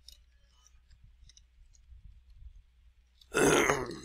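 A few faint keyboard taps over a low hum, then a man clears his throat loudly near the end.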